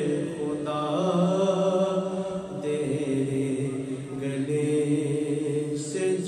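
A naat sung by a male reciter in long, slowly moving melodic lines with held notes.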